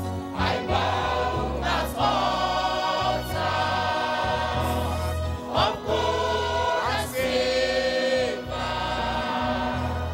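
Mixed church choir of men's and women's voices singing a gospel song in harmony. The long held chords change every second or two over steady low bass notes.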